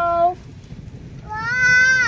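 A toddler shouting "oi!" in long, high-pitched calls: one trails off about a third of a second in, and a second, higher call starts past the middle and falls at its end.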